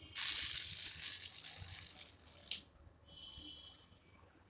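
A spiral chain of small wooden dominoes toppling one after another on a marble floor: a fast, continuous clatter for about two seconds, then one last sharp click.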